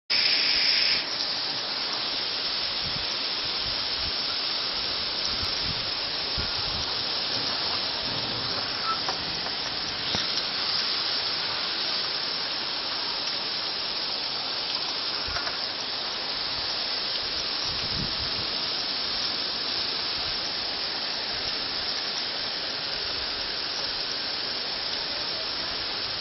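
Torrential rain pouring down in a steady hiss, a little louder for about the first second.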